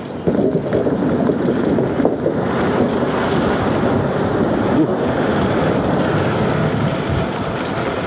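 Wind rushing over the microphone and road noise from a Nanrobot N6 72V electric scooter riding at speed, a steady loud rush while the scooter accelerates on its single motor.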